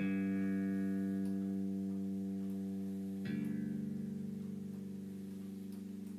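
Electric bass guitar played through a Fender bass combo amp: a low note rings out and sustains. About three seconds in, a second note is struck over it, and the two keep ringing together with a slight wavering in level.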